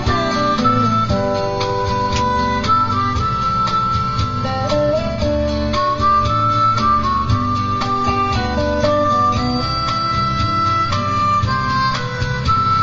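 Instrumental break of a country song backing track: steady acoustic guitar accompaniment under a lead melody of long held notes.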